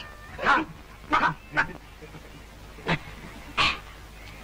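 A run of short, sharp barks, five in about four seconds, each cut off quickly.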